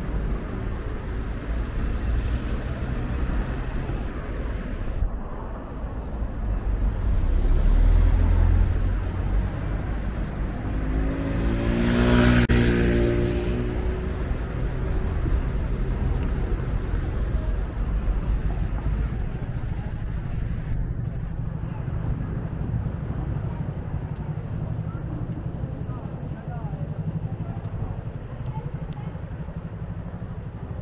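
City street traffic: a steady low rumble of passing cars. A heavier vehicle swells past about eight seconds in, and another vehicle passes close around twelve seconds in, its engine note shifting in pitch as it goes by.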